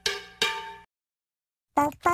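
Logo sting of two struck, ringing metallic notes about half a second apart. Each starts sharply and fades quickly, the second ringing a little longer.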